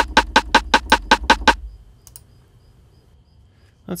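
A rim shot sample triggered over and over from a software sampler, a quick even run of about six dry, ringing clicks a second that stops about one and a half seconds in.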